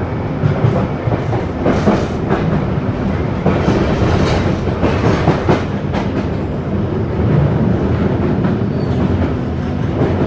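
1972 Tube Stock train running at speed, heard from inside the carriage: a steady low rumble of wheels and running gear, with the wheels clattering over rail joints through the middle few seconds.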